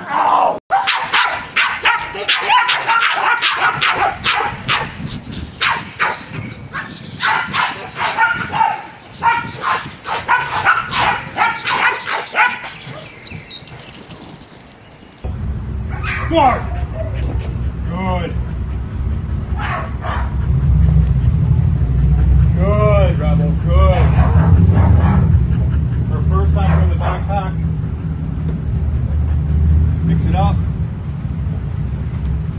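Working dogs barking repeatedly and excitedly during bite work, several barks close together in the first half. After a sudden change about halfway, a single dog gives short barks every second or two over a steady low rumble.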